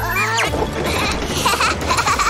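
High cartoon character voices squealing and exclaiming over playful background music, their pitch sliding up and down at the start and again near the end.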